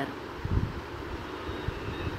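Steady background hiss with an uneven low rumble and a few soft low thumps, the strongest about half a second in.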